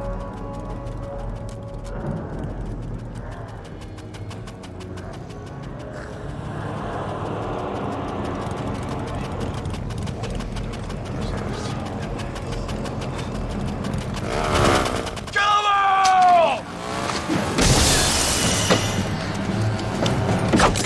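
Film soundtrack: a tense music score with a fast, even ticking over the first few seconds. About three-quarters of the way through comes a falling, wavering shriek, followed near the end by loud crashing bursts of noise.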